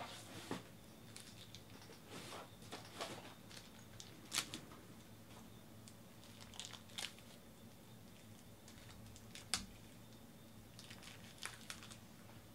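Sports cards and their packaging being handled: faint, scattered crinkles, rustles and light clicks, with two sharper clicks about four and a half and nine and a half seconds in.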